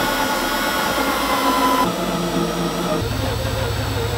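Power drill running with a step drill bit, enlarging a hole in the plastic wing for the rear washer nozzle. The steady whir changes in pitch twice, about two and three seconds in.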